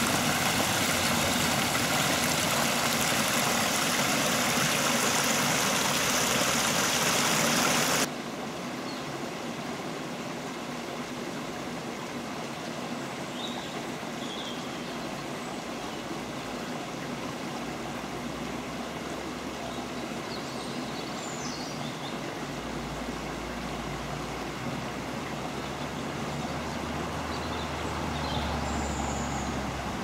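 Stream water pouring over a small weir: a loud, steady rush that stops abruptly about eight seconds in. After that a much quieter outdoor background, with a few short high chirps.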